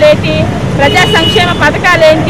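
A person speaking without a break, over a steady low background rumble.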